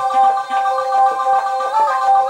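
Roland JD-XA synthesizer playing a free arpeggiator patch: several steady held tones together, with a short bend in pitch near the end.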